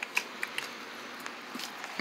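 Faint handling noise from hands moving tissue-paper puppets in front of a phone camera: a few light ticks and soft rustles over low hiss.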